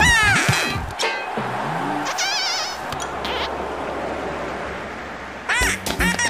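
Cartoon sound effects over background music: a quick falling glide at the start, a trilling pea-whistle blast about two seconds in, then a cartoon duck quacking near the end.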